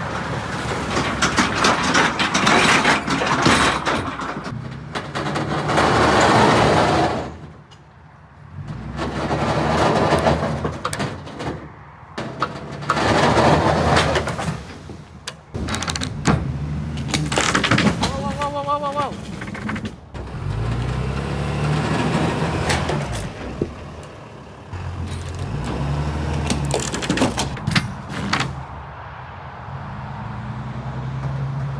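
Pickup tow truck's engine running, its low hum rising and falling in steps, with recurring bursts of noise and scattered sharp clicks and knocks.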